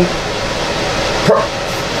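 A steady background hiss fills a pause in the talk, with one short voice sound about a second and a half in.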